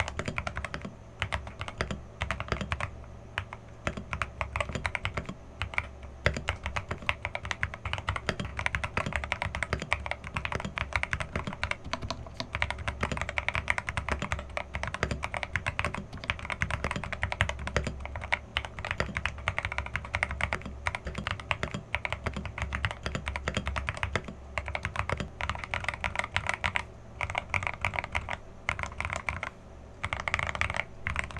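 Continuous fast typing on a foam-modded Rakk Pirah mechanical keyboard with lubed Akko Jelly Black linear switches and XDA keycaps, giving a deep, thocky keystroke sound. There are brief pauses about a second in and near the end.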